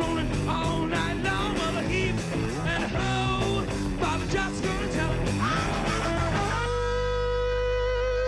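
Live hard rock band playing, with distorted electric guitars, bass and drums under a male lead vocal. About six and a half seconds in, a single long note is held over the band.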